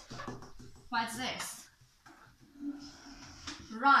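Mostly speech: a short spoken phrase about a second in, a low voice murmuring, and the word "run" near the end, with a few faint clicks of small items being handled on a table.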